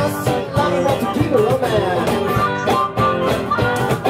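Live rock-and-roll band playing an instrumental break: electric guitar lead with string bends over acoustic guitar and a steady percussion beat, with a harmonica holding long notes.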